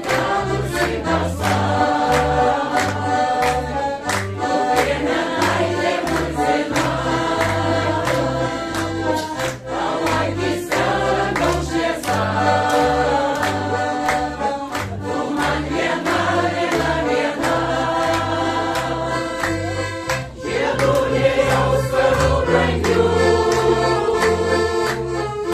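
Mixed choir of women's and men's voices singing a song in unison and harmony, accompanied by a piano accordion keeping a steady, regular bass beat. About twenty seconds in the voices move to higher held notes.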